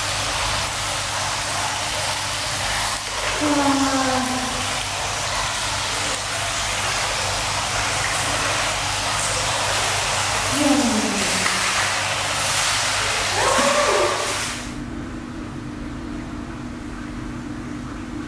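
Hot-spring water pouring steadily from a wooden spout into a bath, a continuous splashing hiss, with a few brief voice sounds over it. About fifteen seconds in it cuts off suddenly and gives way to a quieter steady hum.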